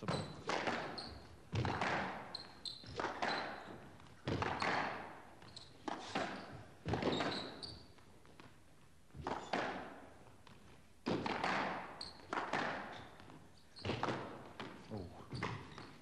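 Squash rally: the ball cracking off rackets and the court walls, sharp hits at uneven intervals of roughly one to one and a half seconds, each ringing out in the hall.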